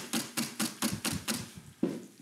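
Wire balloon whisk beating egg whites against the side of a stainless steel mixing bowl, a fast, even clatter of about five strokes a second, whipping them for meringue. The strokes fade out after about a second and a half, and a single knock follows near the end.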